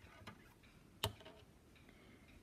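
Quiet handling of a knitted piece and a knitting needle: a few faint ticks, then one sharp click about a second in.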